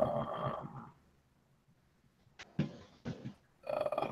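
A man's drawn-out "uh" of hesitation that fades out after about a second. Then near silence, broken by a click and a few short faint sounds, before talk resumes near the end.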